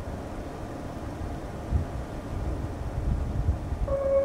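Steady low rumble and hiss of road traffic or wind, with a few soft low thumps. Music with a bell-like mallet melody comes in at the very end.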